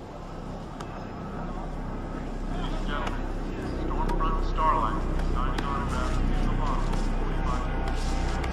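A low drone that starts about a second in and builds steadily in loudness, with indistinct, murmured voices over it from about three seconds in.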